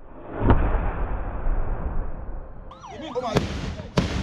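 A home-made Biafra-war-style cannon bomb goes off with one loud blast about half a second in, followed by a long rumbling echo. Two sharper bangs come near the end, and a warbling, siren-like wail starts over them.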